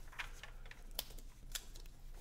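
A comic book's paper page being turned by hand: faint rustling with a few soft ticks, the sharpest about a second in.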